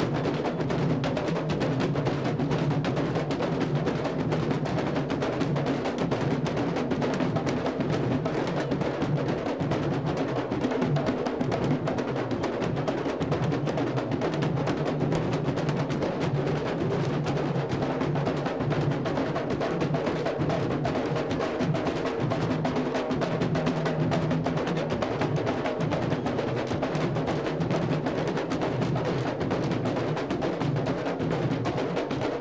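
A candombe drum line (cuerda de tambores) playing a continuous, dense rhythm, with sticks and hands on the drumheads and clicking sticks on the wooden shells.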